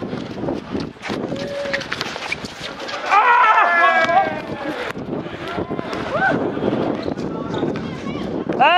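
Players shouting to each other during a pickup basketball game on an outdoor concrete court, with running footsteps and short knocks on the concrete. The shouts are loudest about three seconds in.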